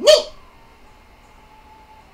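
A single short shouted "Ni!" cry, rising in pitch, right at the start, then quiet room tone with a faint steady hum.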